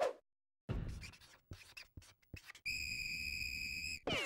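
Cartoon sound effects: a quick run of short, scratchy strokes, then one long, steady, shrill whistle blast from about two and a half seconds in.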